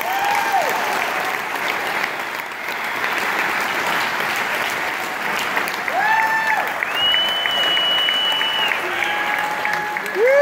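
Audience applauding steadily, with a few short shouted cheers and one long high whistle held for about two seconds, starting about seven seconds in.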